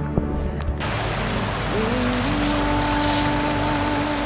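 Slow background music with long held notes, joined about a second in by the steady rush of flowing river water.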